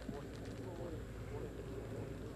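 Quiet outdoor ambience: faint, distant chatter of onlookers over a low steady hum, with one small click about a tenth of a second in.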